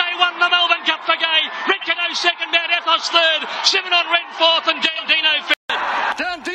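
Fast, excited race-call commentary by a male voice. It cuts off abruptly near the end in a brief moment of silence, and then speech starts again.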